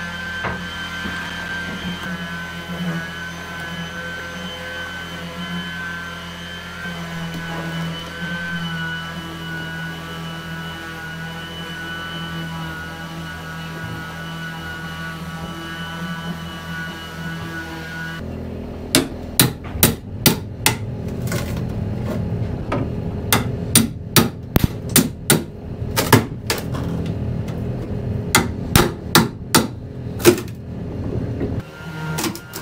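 A steady hum with a few held tones, then, from about two-thirds of the way in, hammer blows struck in quick irregular groups: work tearing out old pipework and timber in a wooden boat's hull.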